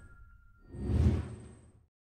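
A whoosh sound effect for an animated logo, swelling up and dying away about a second in, with the tail of a high ringing tone fading out at the start. The audio cuts to silence just before the end.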